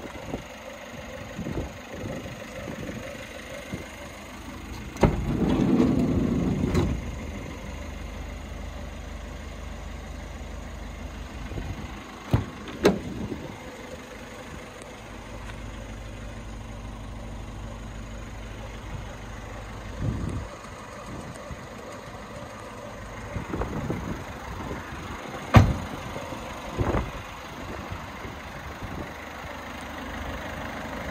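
Vauxhall Vivaro van's engine starting about five seconds in with a short loud surge, then idling steadily. Several sharp clicks and knocks are heard.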